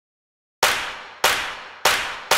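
Three sharp clanging impact hits about 0.6 s apart, each ringing and fading away, starting about half a second in: the opening beats of an edited intro sting.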